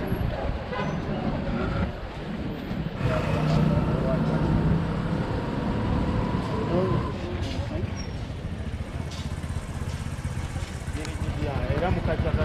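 Roadside street ambience: motor traffic going by under a continuous low rumble, with people talking in the background.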